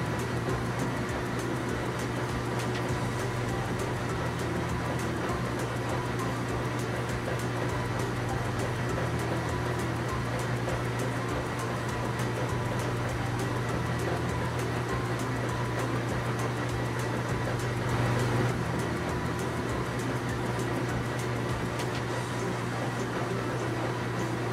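Steady low mechanical hum of a heavy-vehicle engine sound effect for a mobile crane at work, swelling briefly about three quarters of the way through.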